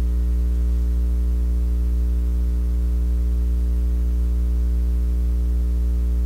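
Steady electrical mains hum: a low buzz with a stack of evenly spaced overtones, unchanging, with no other sound standing out.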